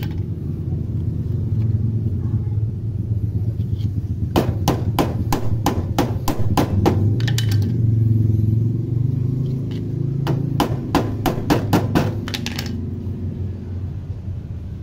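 Rubber footrest being tapped onto a motorcycle footpeg with a hammer: two runs of quick knocks, about three a second, the first from about four seconds in and the second near the end, over a steady low hum.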